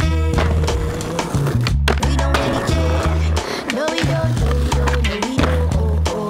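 Skateboard wheels rolling and the board clacking on concrete, mixed under a hip-hop backing track with a heavy, pulsing bass beat.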